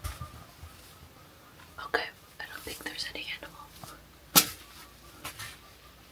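Quiet whispered speech, with two sharp clicks or knocks: one about two seconds in and a louder one a little past four seconds.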